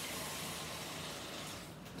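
Water running from a kitchen tap into a stainless-steel jug: a steady rushing hiss that eases off a little near the end.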